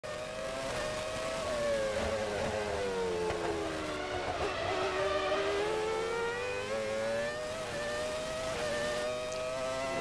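Onboard sound of a 1998 McLaren-Mercedes Formula One car's 3.0-litre V10 at high revs. The engine note drops as the car slows through a corner, lowest about halfway through, then climbs again as it accelerates out.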